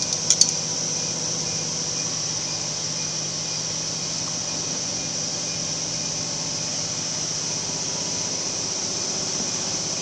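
Steady hum and high hiss of workshop fans running, with two or three light clicks within the first half second.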